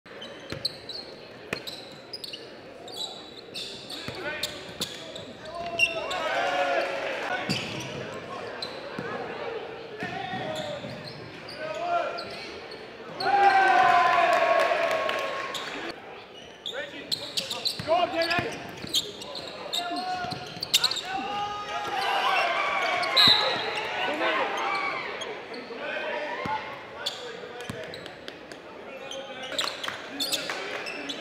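Basketball bouncing on a hardwood gym court, with sharp knocks throughout, under shouting voices of players and spectators echoing in the gym. Several louder calls stand out, the longest near the middle.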